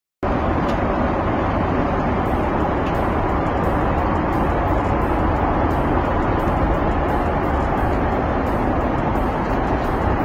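Steady rush of jet airliner cabin noise, an even, unbroken drone heard from inside the passenger cabin.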